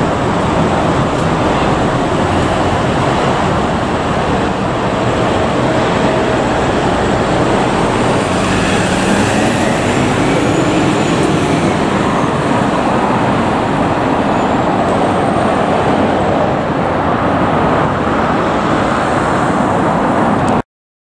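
Hino city bus's engine running close by as it pulls away from the stop and gathers speed, over steady road traffic.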